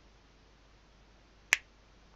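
A single sharp finger snap about one and a half seconds in, against quiet room tone.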